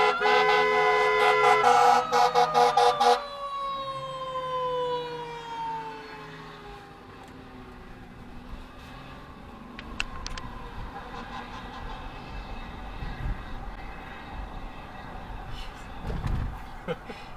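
Emergency vehicle sounding a loud horn, then short repeated blasts that stop about three seconds in, while its siren wail glides down in pitch and fades over the next several seconds. Low road rumble remains afterward.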